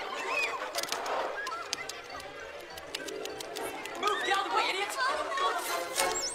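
Film soundtrack: indistinct chattering voices over background music, with a few sharp clicks.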